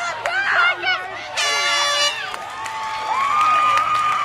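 A short horn blast, under a second long, amid a crowd of spectators shouting and cheering, followed by one long drawn-out shout.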